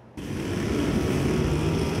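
Backpack brush cutter's small petrol engine running steadily. It cuts in abruptly just after the start.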